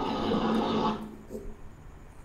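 A man's voice holding one drawn-out, level-pitched sound for about a second, like a hesitation 'uhh', then fading to faint room noise.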